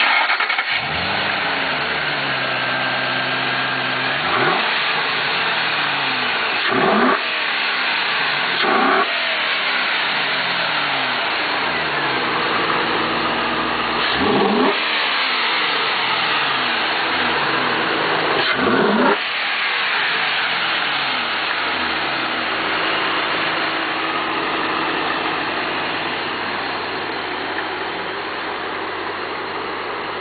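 2007 Ford Mustang Shelby GT's V8 starting up and running at a high idle, then revved in five quick throttle blips over the next 20 seconds. It then settles into a steady idle.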